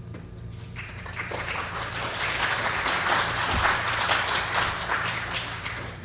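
Audience applauding. The clapping builds about a second in, is loudest in the middle, and dies away near the end.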